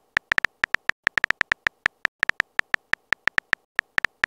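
Phone keyboard typing sound effect: short, sharp key clicks in a quick, uneven run, about seven or eight a second, as a text message is typed letter by letter.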